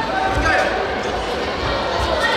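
Dull thuds of taekwondo sparrers' footwork and kicks on the mat, about half a second in and again near the end, in an echoing sports hall with voices shouting over them.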